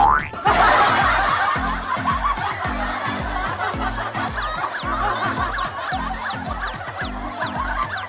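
Laughter from several people, dense and continuous from about half a second in, over background music with a steady thumping beat. A short rising whistle-like glide comes just before the laughter starts.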